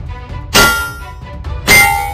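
Two metallic clangs about a second apart, each ringing on briefly: a crowbar striking a metal cash machine. Background music runs underneath.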